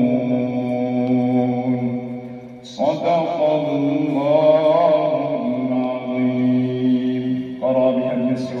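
A man reciting the Quran in slow, melodic tartil, drawing out long held notes. There is a short break about three seconds in, after which the recitation resumes.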